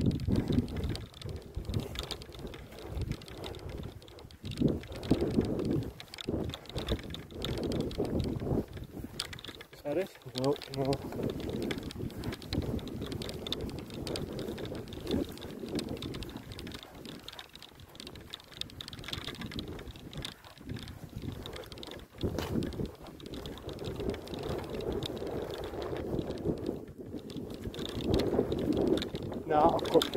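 Footsteps on grass and clothing rubbing against a body-worn phone microphone while walking: an uneven run of soft, low knocks and brushing.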